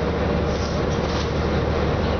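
Diesel engine of an Orion VII NG city bus (EPA 2010 build) running, heard from inside the passenger cabin as a steady drone with a low hum under it.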